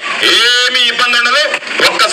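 Recorded speech played back from a mobile phone's speaker held up to a microphone.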